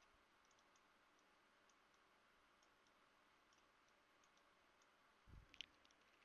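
Near silence at a computer desk, with faint, scattered clicks. About five seconds in comes a brief thump with a few sharper clicks.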